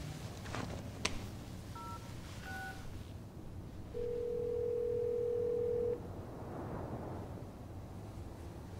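Phone call being placed: a click, two short touch-tone keypad beeps, then one ring of the ringback tone lasting about two seconds, the call ringing through on the other end.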